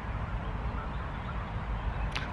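Outdoor background noise: a low, uneven rumble with a faint hiss above it.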